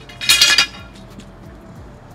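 A brief clatter of clinking metal or glass objects, lasting about half a second near the start, followed by quiet room sound.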